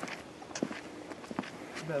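Footsteps of several people walking on a paved path, with two sharp steps standing out about half a second and a second and a half in.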